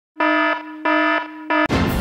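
Electronic alarm beeps as a warning sound effect: three beeps of one pitch, the last one cut short about a second and a half in by a sudden deep boom as music starts.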